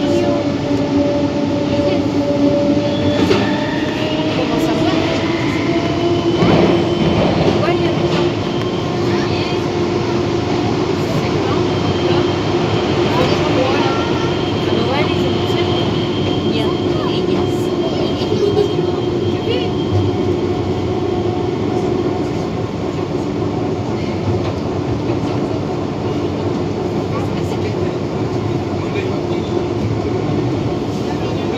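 Siemens/Matra VAL 208 rubber-tyred automated metro running between stations, heard from inside the car. Its electric traction motors whine steadily in several tones, and one tone rises over the first few seconds as the train gathers speed, all over the continuous rumble of the running gear on the guideway.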